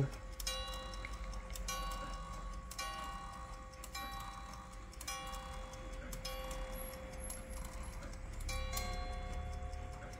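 Drocourt grande sonnerie carriage clock striking the hour seven times for seven o'clock, then a two-note ting-tang for quarter past, each metallic note ringing on.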